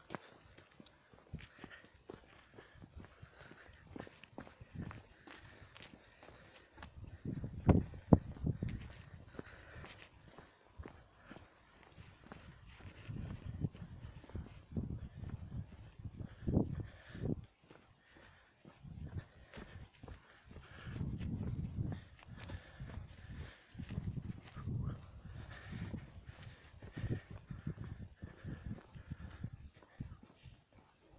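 Footsteps on a paved path, with the rubbing and low rumble of a handheld camera moving on the walk. The loudest knocks come about eight seconds in.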